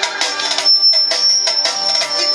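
Live band music on a keyboard with percussion, the melody thinning out; a steady high-pitched tone comes in about a third of the way through and holds.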